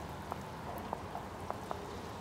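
Quiet restaurant room tone: a steady low hum with a few faint, scattered clicks and taps.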